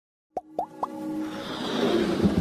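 Three quick rising 'bloop' pop sound effects about a quarter second apart, then a swelling whoosh that builds toward the end, as in an animated intro.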